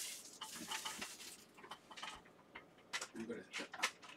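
Scattered light clicks and taps of a clear plastic compartment box of small connectors being handled on the bench.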